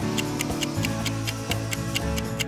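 Quiz countdown timer ticking steadily over light background music, marking the seconds left to answer.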